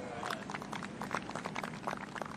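Scattered hand-clapping from golf spectators around the green, a quick run of separate sharp claps.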